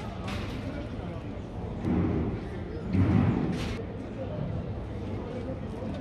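Street ambience with people's voices in the background and two louder low swells about two and three seconds in.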